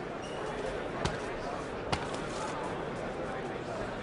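Arena crowd murmur during a boxing bout, with two sharp smacks about a second apart, typical of punches landing on gloves or body.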